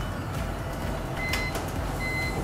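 Short high electronic beep a little past halfway through, over a steady low background rumble.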